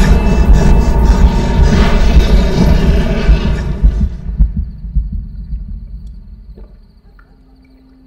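A sudden, loud low rumble with a throbbing pulse, a thriller soundtrack effect, that fades away over about six seconds.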